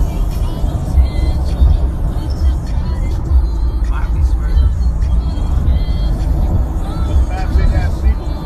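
Inside a car moving at highway speed: a heavy low road-and-wind rumble, with music playing in the cabin and some voices over it.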